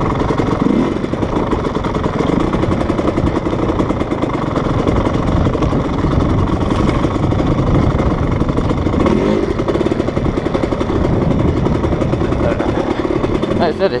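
GasGas enduro dirt bike's engine running as it is ridden over rough trail, its pitch rising and falling a few times with the throttle. Wind and trail noise rush steadily on the camera microphone.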